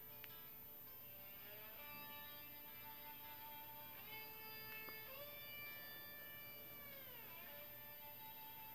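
Faint guitar playing the song's instrumental outro: sustained ringing notes, with new ones struck about two, four and five seconds in and the pitch sliding down near the end.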